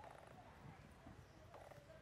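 Near silence: faint outdoor background with a low rumble and a couple of brief, faint sounds.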